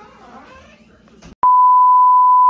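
An editing sound effect: a steady, loud test-tone beep, one unbroken tone laid under a TV-static glitch transition. It starts sharply about a second and a half in, just after a brief click.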